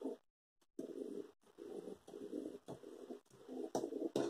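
Faint scratching of an erasable fabric-marking pen drawn along the edge of a clear quilting ruler across cotton patchwork, in several short strokes.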